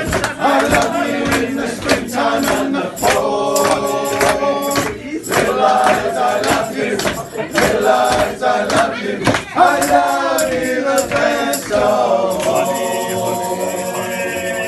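Men's vocal group singing a shanty-style song together, with a steady beat of about three strokes a second on hand-held frame drums. The drumming stops near the end while the voices hold on.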